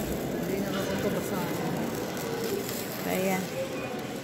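Indistinct voices of people talking around the camera, a steady background chatter with no single clear speaker.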